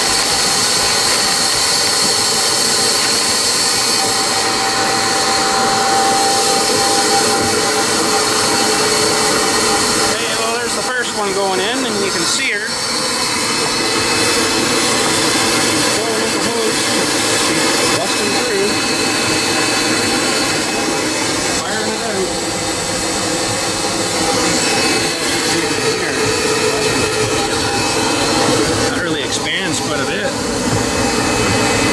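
Insulation blowing machine running steadily, its blower and hopper agitator beating down loose-fill fibreglass insulation and pushing it out through the hose with a constant whir and rush of air.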